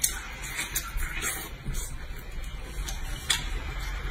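A man chewing a mouthful of pork, with repeated wet clicks and smacks of the mouth.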